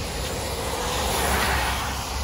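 Car driving on a rain-wet road: a steady low rumble of engine and road, with the hiss of tyres on wet pavement that swells and fades about halfway through.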